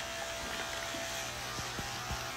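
Steady electric hum and buzz, even in level throughout, with a faint thin high tone over it.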